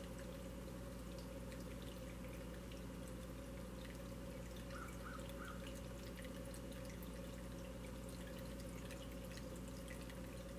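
Small tabletop water fountain trickling faintly and steadily, with light drips, over a low steady hum.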